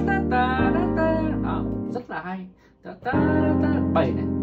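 Piano chords played and held, with a man singing the melody along on 'ta ta' syllables over them. After a short break just past the middle, a new chord is struck about three seconds in.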